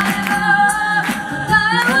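Six-voice female a cappella group singing a Japanese pop song: a lead vocal over sustained vocal harmonies, with no instruments.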